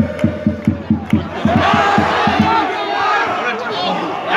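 Football crowd chanting on the terraces, with a fast rhythmic beat of about five strokes a second that stops about two and a half seconds in, leaving mixed crowd shouting.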